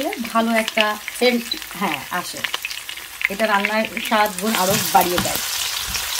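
Sliced onion and whole spices (bay leaves, cinnamon, black pepper, cloves) sizzling in hot oil in a non-stick pan, with a silicone spatula stirring them. The sizzle grows louder after about four and a half seconds as the oil bubbles harder.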